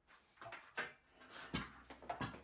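Faint handling noise from scuba gear being moved, with a dull knock about one and a half seconds in.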